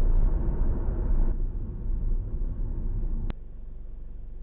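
Road and engine noise inside a moving Hyundai Tuscani's cabin, a steady low rumble. It drops suddenly to a quieter hum a little after three seconds.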